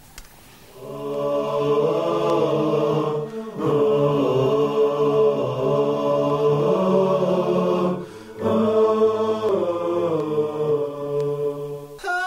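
Chanted vocal music with long held notes, in three phrases broken by brief pauses. It starts about a second in and plays as the station-break jingle.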